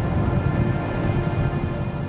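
A deep, steady rumble of wind sound effect for a billowing dust storm, under a held, droning music score.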